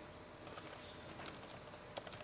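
Laptop keyboard being typed on: a few faint, irregular key clicks over steady background hiss, the loudest click near the end.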